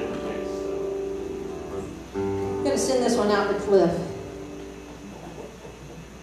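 Acoustic guitar chords ringing out, with a fresh chord strummed about two seconds in and left to fade away. A voice is briefly heard over it around three seconds in.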